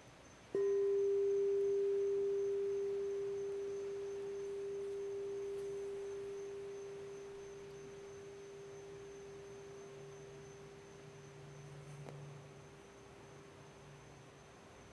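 Crystal singing bowl struck once with a mallet about half a second in, then a single pure tone ringing on and fading slowly.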